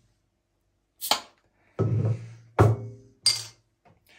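Glass beer bottles knocking and clinking together as the cap of one is used to lever the cap off another: four sharp knocks about a second apart, the last one brighter.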